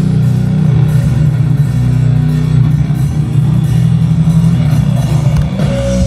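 Loud heavy metal band playing: distorted guitars and drums, heaviest in the bass.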